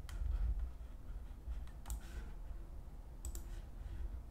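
A handful of sharp, scattered clicks from working a computer while marking up a document on screen, over a low background rumble.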